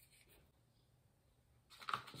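Near silence, then about a second and a half in, a wooden barbecue skewer starts scraping and tapping in a plastic bowl as it stirs fabric paint.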